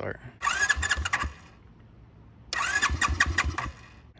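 Electric starter of a YCF Pilot 150e's single-cylinder four-stroke engine cranking it twice, about a second each time, with a whine and quick compression pulses. The engine does not catch and run either time.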